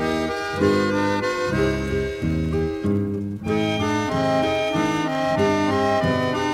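Instrumental passage of a guarânia song, with no singing: sustained chords and melody notes over a bass line that changes every half second or so, and a short dip in the high notes about three seconds in.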